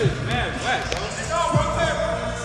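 A basketball bouncing on a hardwood gym floor, a few sharp knocks, over voices and music.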